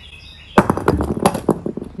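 A heavy rock dropped from two meters hits a concrete floor about half a second in with a sharp crack, followed by a clatter of smaller knocks and rattles for over a second as it tumbles and bits scatter.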